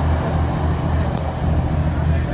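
Diesel passenger train running at speed, heard from inside the carriage: a steady low rumble, with one brief high click about a second in.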